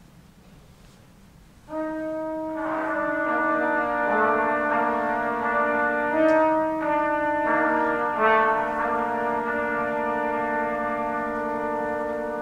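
Trio of trumpets playing slow, sustained notes: one voice enters about two seconds in after a brief quiet, the other two join within about a second, and they hold overlapping chords whose notes shift one at a time.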